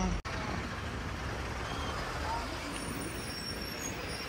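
Steady engine and road noise of a bus creeping through a traffic jam alongside trucks.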